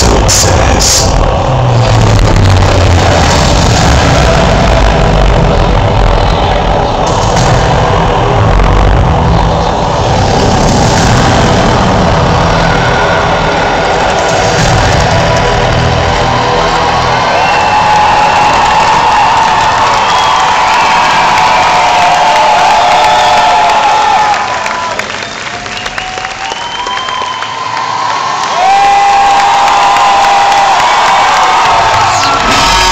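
Loud concert intro music played through a hall's PA, with a heavy rumbling low end, and the audience cheering over it. The sound dips for a few seconds near the end, then swells back.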